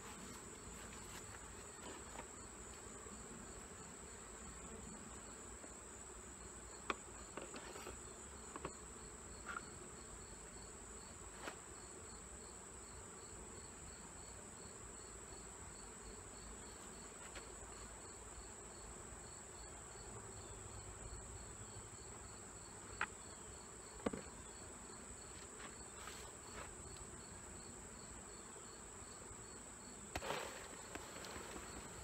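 Honeybees humming faintly around an open hive, under a steady, evenly pulsed high chirping of insects. A few sharp knocks come from the wooden frames and boxes being handled, the loudest about a third of the way in and again near 24 s.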